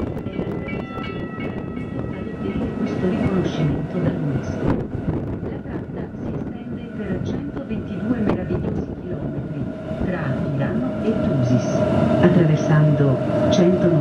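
Rhaetian Railway Bernina line train running, heard from inside the carriage: a continuous wheel-on-rail rumble with scattered clicks. About ten seconds in, a steady high whine joins and the train grows louder.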